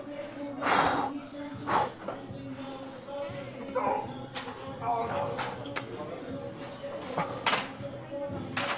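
A man breathing out hard in short, forceful bursts during a set of lateral raises, a handful of them a second or more apart, the loudest about a second in. A steady background hum runs underneath.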